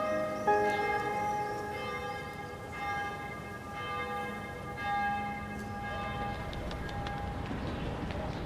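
Bells ringing: several struck, pitched notes that ring on and overlap, with fresh strikes near the start, about half a second in, around three seconds and around five seconds.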